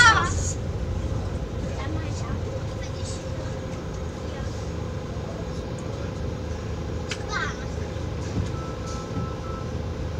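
Outdoor street background: a steady low rumble of traffic with a faint steady hum, a brief voice calling out about seven seconds in, and a short steady beep near the end.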